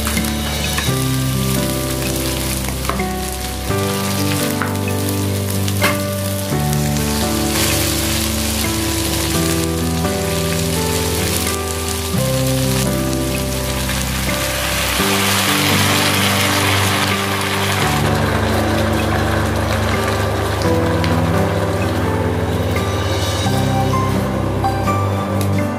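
String beans and pork belly sizzling as they stir-fry in a pan, under background music with a steady bass line. The sizzle grows louder about two-thirds of the way through.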